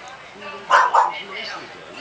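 Background chatter of people's voices, with two short, loud yelps close together about a second in.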